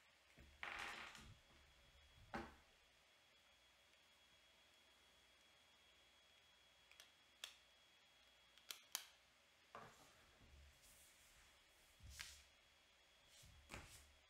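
Faint handling of trading-card packs and cards: a short rustle about a second in, then scattered light clicks and taps a second or two apart.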